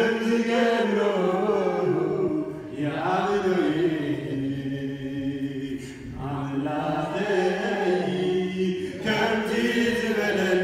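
Voices chanting a slow, repetitive sung refrain, in phrases about three seconds long with short breaks between them.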